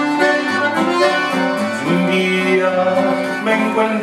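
Button accordion playing a melodic instrumental passage in conjunto style, with guitar accompaniment underneath.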